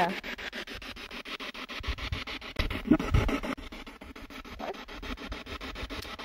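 Spirit box, a handheld radio sweeping rapidly through stations, giving choppy static chopped up about ten times a second, with a few brief louder snatches of sound.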